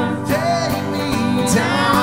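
Live acoustic country music: a strummed acoustic guitar and a mandolin under voices singing in harmony, steady and unbroken.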